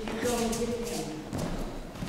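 An aikido partner being thrown and taking a breakfall onto a gym mat: a thud and soft taps and shuffles of bare feet on the mat, with a person's voice over them.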